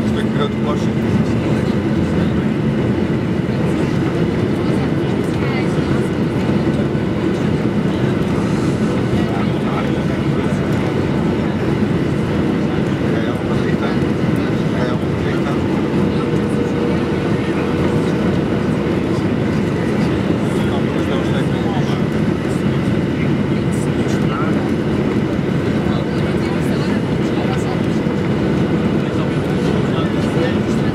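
Steady cabin noise of a Boeing 737-800 on final approach, heard from a window seat over the wing: a constant rumble of CFM56 engines and rushing airflow. A faint steady hum comes in about halfway through.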